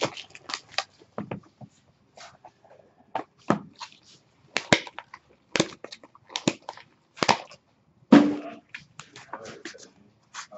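Hands handling a cardboard trading-card box and its packaging: a string of irregular sharp clicks, taps and rustles as the box is opened and the cards are lifted out.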